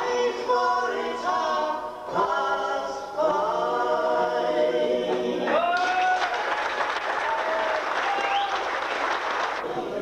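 A four-woman vocal group singing unaccompanied in harmony. The song ends a little over halfway through and audience applause breaks out, dying away near the end.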